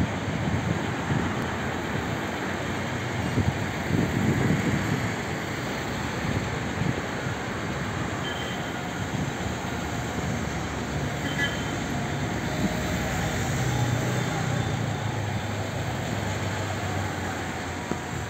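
Steady street traffic noise, with a vehicle engine's low hum rising over it in the second half.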